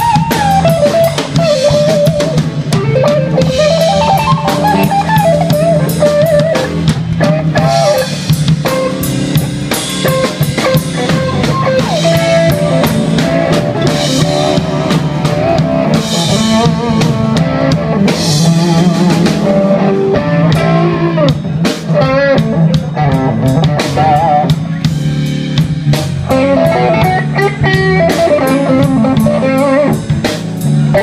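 Live blues band playing an instrumental passage: an SG-style electric guitar plays a lead line with bending, wavering notes over electric bass and a drum kit.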